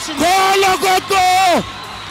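A commentator's excited, drawn-out cries at a knockout punch: two long high-pitched yells in the first second and a half, then quieter background.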